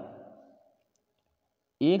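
A man's speaking voice trails off, then dead silence for about a second, and the voice starts again near the end.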